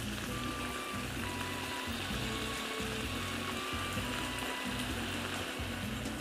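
Clams sizzling quietly and steadily in a frying pan, under background music with low notes and a few held tones.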